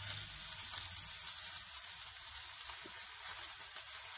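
A steady, even hiss of outdoor background noise, strongest in the high range.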